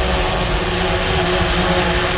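Xdynamics Evolve quadcopter's motors and propellers humming steadily as it descends at full throttle down, several even tones together; a bigger drone, quite loud.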